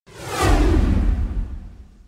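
A whoosh sound effect with a deep rumble beneath it, swelling in the first half second and then fading away over the next second and a half: a news-intro stinger.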